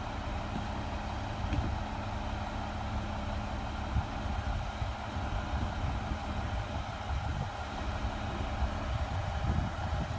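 Garbage truck engine idling with a steady low rumble; a steady hum in it stops near the end, and there is a single knock about four seconds in.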